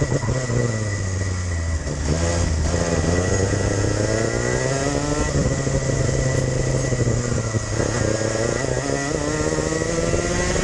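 Race kart engine heard from on board, its pitch falling as the kart slows for corners and climbing again as it accelerates out, twice over.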